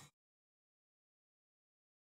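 Dead silence: the sound track drops to nothing, without even room tone.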